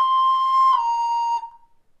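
A recorder playing two notes slurred together: a C held for about three-quarters of a second, then moving down smoothly to a B flat with no gap between them, which fades out about a second and a half in.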